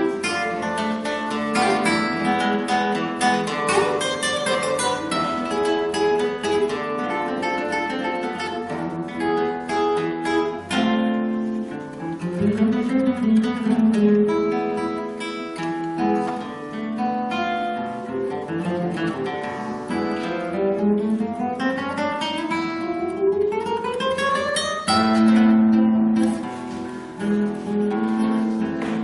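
Solo classical guitar played fingerstyle on a nylon-string instrument: a continuous, flowing passage of plucked notes, with a long rising run of notes about three quarters of the way through.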